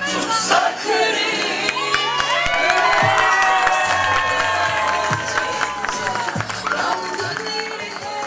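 Music with steady bass notes and a long held melodic line, under a crowd cheering and clapping.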